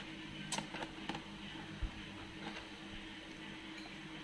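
A few light, sharp clicks and taps of a screwdriver and fingers on the laptop's plastic bottom cover, in the first two seconds, over a steady low hum.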